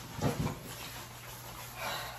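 A person breathing out hard once, about a quarter second in, winded after a long bike ride, then faint room hum.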